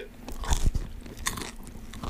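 Close-miked chewing and mouth noises, irregular crunchy clicks with a light knock about half a second in.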